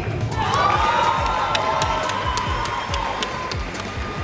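An audience member giving one long, held cheer for a graduate crossing the stage. Under it runs background music with a steady bass beat, and there are a few scattered claps.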